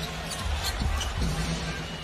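A basketball being dribbled on a hardwood court over steady arena crowd noise, with low music in the arena underneath.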